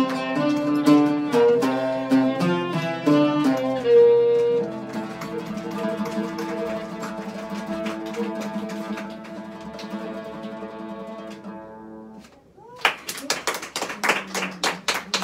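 Oud and violin playing the last phrase of a tune in quick plucked notes, then holding a long final chord for about seven seconds until it stops. About a second later, hand clapping starts near the end.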